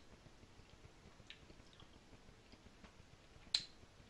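Quiet room tone with a few faint ticks and one sharp, short click about three and a half seconds in.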